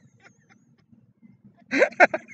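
Two people laughing hard: about a second and a half of near-silent, breathless laughing, then a loud burst of laughter with a rising whoop near the end.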